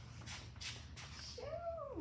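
A single high-pitched call about 1.4 seconds in, rising then falling in pitch and sliding down at the end, lasting under a second. A few faint rustles come before it.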